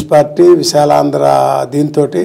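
A man speaking, drawing out one vowel in a long, level tone for nearly a second in the middle.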